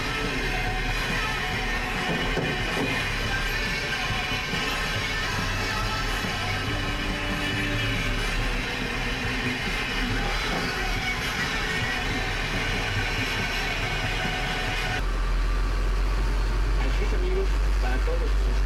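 A mix of voices and music with a steady low hum. About fifteen seconds in it changes abruptly to the low rumble of a car engine heard from inside the cabin while driving slowly, with voices over it.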